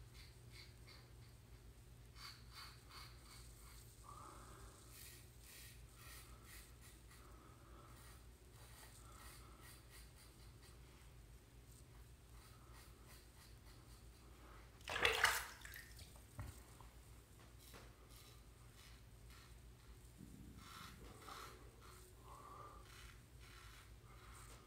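A double-edge safety razor (Vikings Blade Vulcan) scraping faintly in short strokes across lathered stubble, on a second pass across the grain. About fifteen seconds in there is one brief, louder burst of noise.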